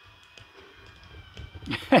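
Small electric motor of a toy monorail shuttle running around its plastic track with a faint steady whine, with a few light clicks and a low rumble. A voice cuts in near the end.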